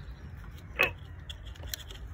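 Light handling clicks from a coil pack puller tool gripping a stuck ignition coil pack, with one short falling squeak about a second in.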